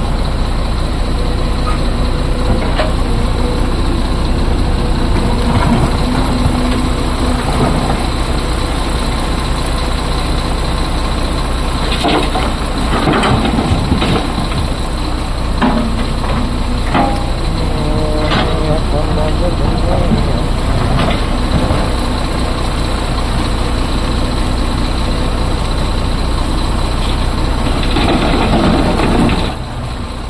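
Heavy diesel engines running steadily: a crawler excavator working its bucket through broken rock next to an idling tipper truck. Scrapes and knocks of rock come through around the middle.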